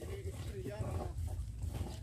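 Faint, brief voice sounds over a steady low rumble.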